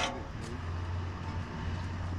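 A steady, low engine hum of a motor vehicle, starting about half a second in, just after a brief sharp sound.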